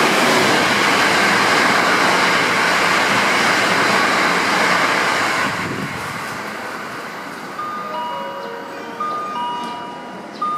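Hankyu 1000 series electric train running through the station at close to top speed, about 114 km/h: a loud rush of wheels and air that fades away after about five seconds. From about seven and a half seconds in, a series of clear electronic chime tones sounds.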